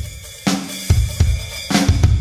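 Rock band recording in a drum break: the full band drops out, leaving a drum kit playing a few sparse, separate hits. The full band comes crashing back in near the end.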